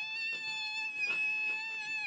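A woman's excited, high-pitched squeal, held on one steady note for about two seconds.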